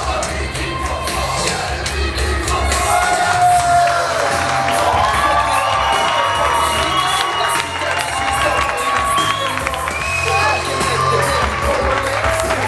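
Arena crowd cheering and shouting over loud music with a heavy bass line.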